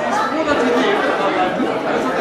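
Many people chatting at once, their voices overlapping in a large hall.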